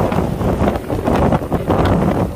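Strong wind buffeting the microphone in a loud, steady rumble, with waves washing over the shore rocks underneath.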